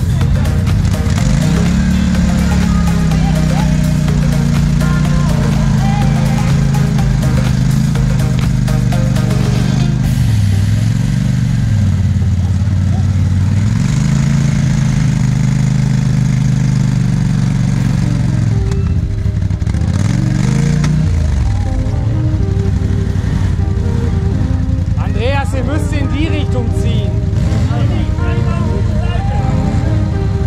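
An ATV engine revving in long held bursts, rising, holding several seconds and dropping back three times, as the machine is worked to get out of deep mud, with music playing over it and brief voices near the end.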